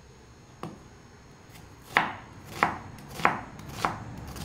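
Large chef's knife chopping an onion on a white plastic cutting board: one light tap about half a second in, then four even knife strokes on the board in the last two seconds, about two-thirds of a second apart.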